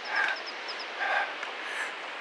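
A small bird chirping: a quick run of short, high chirps, with two brief, lower calls about a second apart.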